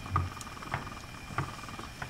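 Pot of salted water with elbow macaroni boiling on the stove, giving scattered bubbling pops and a soft low thump near the start, over a faint steady hum.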